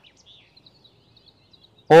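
Mostly quiet outdoor background with faint, short high-pitched chirps repeating at irregular intervals. A narrating voice begins near the end.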